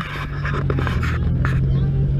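Pickup truck's engine running close by, a steady low drone, with footsteps crunching on a dirt road.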